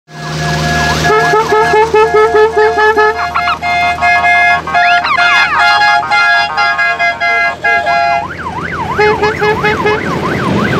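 An electronic siren unit cycles through its tones: a run of short repeated horn notes and rising whoops, then from about eight seconds in a fast up-and-down yelp wail of about three cycles a second. A low engine hum runs underneath.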